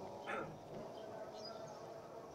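Faint open-air background with a short animal call about a third of a second in and a few faint high chirps after it.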